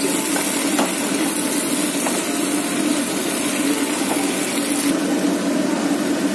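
Pepper-and-onion sauce sizzling steadily in a non-stick wok, with a few light taps of a wooden spatula stirring it.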